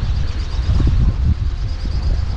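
Wind buffeting the microphone as a steady low rumble, with the yacht's engine running in reverse gear beneath it.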